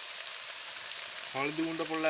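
Whole prawns frying in oil in an iron wok: a steady sizzling hiss.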